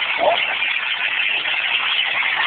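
Steady city street traffic noise, recorded through a low-quality phone microphone, with a brief voice sound just after the start.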